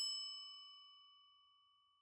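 A single struck chime, like a bell tone, ringing out and fading away within about a second, with a faint high tone lingering after.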